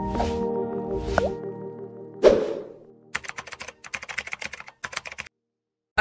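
Intro jingle for an animated title sequence: a held synth chord with whooshing sweeps, then a sharp hit about two seconds in. After that comes a quick, irregular run of clicking, popping sound effects that stops abruptly just before the end.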